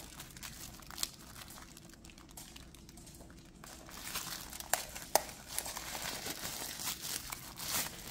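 Thin plastic wrapping crinkling as a small router is pulled out of it by hand. The crinkling is faint at first and gets busier in the second half, with a few sharp crackles.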